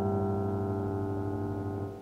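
A guitar chord run through the Emona TIMS PCM encoder and decoder modules, ringing on and slowly fading with a dull top and no bright treble, then dropping away near the end.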